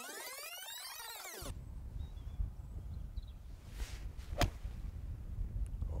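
A seven iron striking a golf ball off the tee: one sharp click about four and a half seconds in, just after the faint swish of the swing, with wind rumbling on the microphone. At the start there is a swept whoosh.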